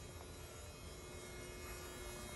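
Quiet room tone: a faint, steady electrical hum with a thin constant tone.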